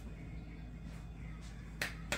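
A single sharp snap of the hands near the end, over a steady low hum.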